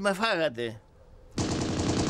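Rapid machine-gun fire that starts abruptly about one and a half seconds in, after a man's voice stops and a short silence.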